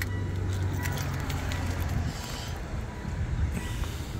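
Low steady hum of a Mitsubishi L200 Warrior pickup's diesel engine idling, with light clicks and rustling as the driver's door is opened and someone climbs out.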